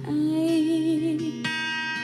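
Live female vocal holding a long note with vibrato over acoustic guitar accompaniment. About one and a half seconds in, the voice stops and a new chord rings on.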